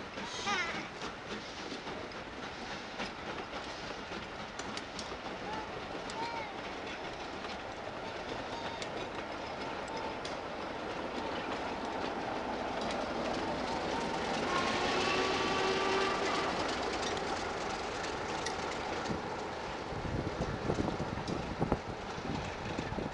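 A rake of passenger coaches rolls slowly past, wheels clicking over the rail joints, building a little louder about two-thirds of the way through. Near the end the Class 33 diesel locomotive on the rear passes, adding a low engine rumble.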